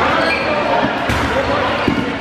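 Rubber dodgeballs striking with sharp smacks, about a second in and again near the end, while players shout and call out.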